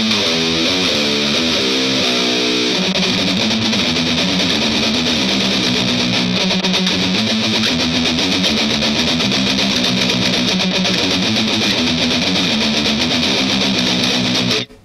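Distorted electric guitar, a Fender Telecaster, playing a fast heavy metal riff. A run of higher notes in the first couple of seconds gives way to rapidly picked, repeated low notes.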